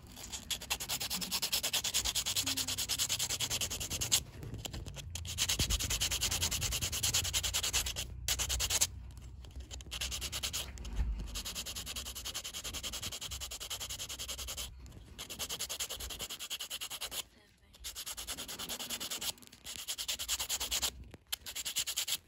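Small piece of walrus ivory being filed by hand against a flat abrasive, a fast back-and-forth rasping hiss in long runs broken by several brief pauses.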